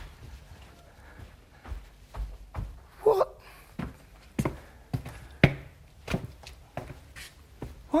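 Footsteps of a man walking on a hard floor, a string of short knocks roughly two thirds of a second apart, with a brief vocal sound about three seconds in.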